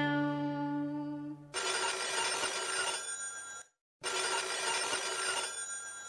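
A telephone bell rings twice, each ring about two seconds long with a short break between. The held notes of the accompanying music end about a second and a half in, just before the first ring.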